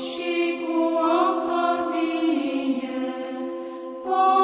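A choir chanting slow, sustained vocal lines over a steady low held note, in the manner of Orthodox church chant; the melody slides down a little past the middle.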